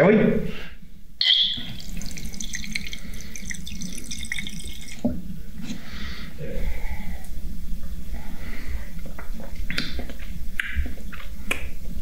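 Mead running from a fermenter's plastic spigot into a drinking glass, starting about a second in. Later come a few small knocks from the glass and tap.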